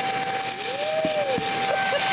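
Shark UpLight vacuum's Lift-Away pod running at full suction through its hose wand, a steady high whine over a rush of air, with a brief rising-and-falling tone in the middle. It is still pulling hard with its bin already loaded with fine dust, cereal and crackers.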